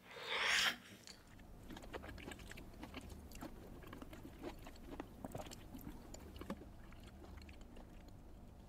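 A raw oyster sucked from its shell in a short slurp, then chewed slowly for several seconds with many small clicks and smacks of the mouth.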